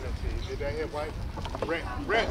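Wind rumbling on the microphone, with distant voices calling out across an open field.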